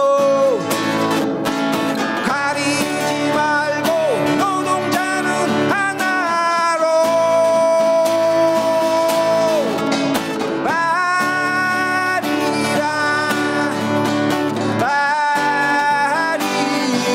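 Live Korean fusion pungmul music: a sung melody over strummed acoustic guitar, with janggu hourglass drums being struck. The voice holds one long note in the middle.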